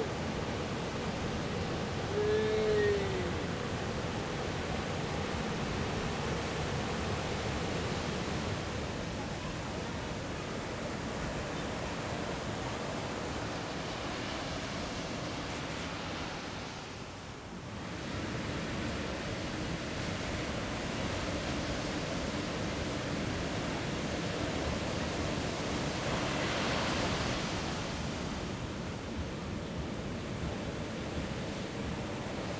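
Ocean surf: the steady wash of breaking waves and whitewash, dipping briefly about halfway through and swelling louder near the end. A short arched call sounds about two seconds in.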